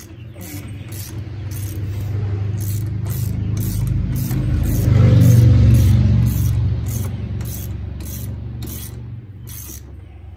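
A low engine hum swells over about five seconds and fades again, like a vehicle passing by. Through it a socket ratchet clicks steadily, about twice a second, as a nut is tightened on the golf cart's front spindle.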